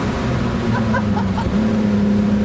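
Ford Sierra XR4x4 engine running steadily under way, heard from inside the cabin; its note sags slightly and then steps up sharply about three-quarters of the way through.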